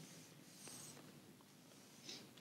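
Near silence: room tone, with a faint brief rustle a little over half a second in.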